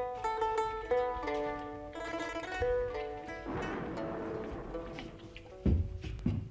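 Background drama music: a melody of plucked string notes, a noisy swell in the middle, and loud low drum strokes near the end.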